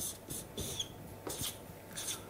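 Felt-tip marker drawing lines on flip-chart paper: several short, high-pitched scratchy strokes, each lasting a fraction of a second.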